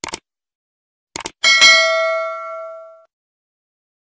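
Subscribe-button animation sound effect: a pair of quick clicks, another pair of clicks about a second later, then a bright notification-bell ding that rings out and fades over about a second and a half.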